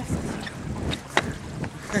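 Wind rumbling on the camera microphone, with a few faint clicks about a second in.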